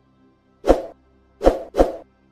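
Three short, sudden sound effects from the animated end-screen buttons: one under a second in, then two close together near the end, over faint background music.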